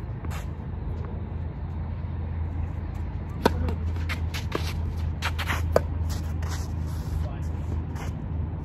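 Tennis ball struck by rackets in a rally: sharp pops, the loudest about three and a half seconds in and another near six seconds, with fainter bounces and taps between, over a steady low rumble.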